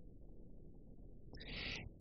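Pause in speech: faint room tone, then a short intake of breath through the mouth about a second and a half in, just before talking resumes.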